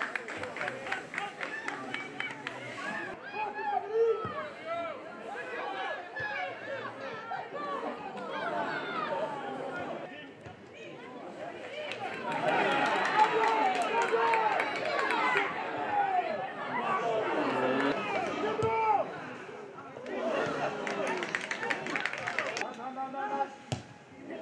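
Overlapping shouts and calls from players and people around a football pitch, many voices at once with no clear words, loudest about halfway through. A few sharp knocks sound among them.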